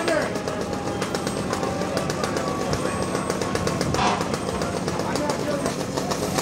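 Fire-scene din from a burning garage: dense rapid crackling of the fire over a steady low hum, with brief distant shouts right at the start and again about four seconds in.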